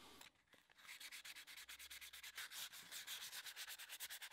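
Faint hand sanding of an epoxy resin and colored pencil bracelet: quick, regular back-and-forth rasping strokes, several a second, starting about a second in.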